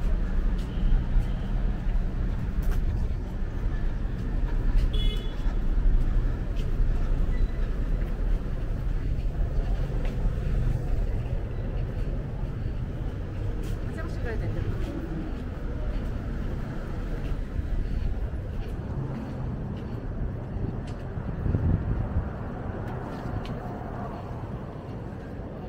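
City street ambience: a steady rumble of road traffic with people talking nearby, louder in the first part and easing off toward the end.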